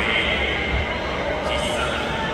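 A voice talking over steady background noise.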